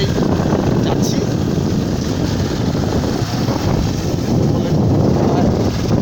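Wind rushing and buffeting on a phone microphone carried on a moving motorcycle, a loud, steady, deep rumble that covers everything else.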